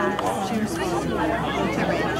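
Several people chatting at once close to the microphone, their voices overlapping so no words stand out: spectators talking on the sideline.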